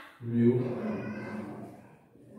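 A man's voice drawing out a long, low-pitched syllable for about a second and a half.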